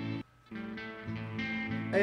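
Guitar notes played through a Behringer DR600 digital reverb pedal, ringing out with reverb. A short break comes just after the start, and the notes come back in about half a second later.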